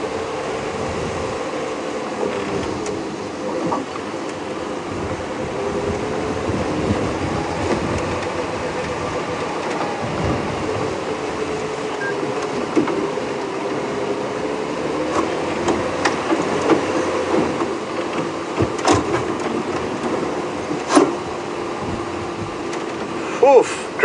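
Open safari vehicle's engine running as it drives along a rough dirt track, a steady hum with a wavering pitch. A few sharp knocks or rattles come in the second half.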